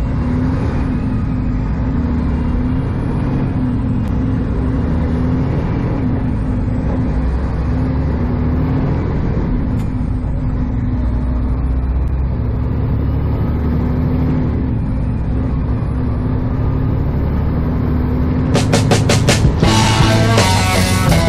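Semi truck's diesel engine heard from inside the cab while driving: a steady low drone with a faint high whine that rises and falls several times. Rock music with drums and guitar comes in near the end.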